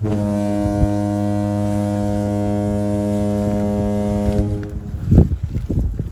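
A low, steady horn-like drone held on one pitch, starting suddenly and fading out after about four and a half seconds. A few footsteps on soft dirt follow near the end.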